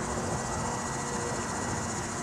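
Insects chirring steadily outdoors: a continuous high, pulsing trill over a low background rumble.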